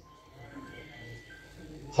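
A pause in a man's amplified speech: faint hall room sound with faint background voices.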